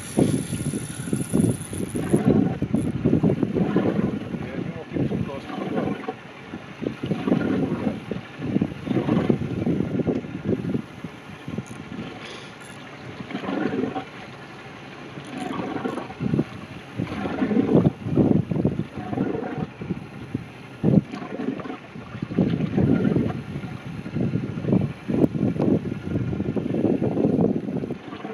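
Wind buffeting the microphone on a small open fishing boat, in uneven gusts, with indistinct voices.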